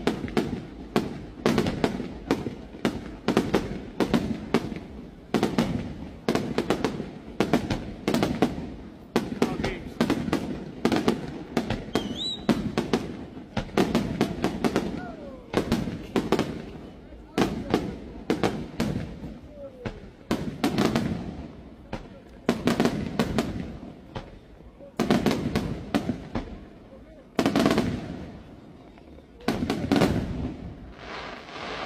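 Aerial fireworks shells bursting in a rapid, unbroken barrage, several bangs a second. The barrage eases briefly twice in the last third.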